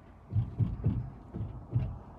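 Low, irregular thumps and rumble, about five or six in two seconds, in the enclosed wooden bed of a moving pickup truck: road jolts and wind buffeting the truck bed.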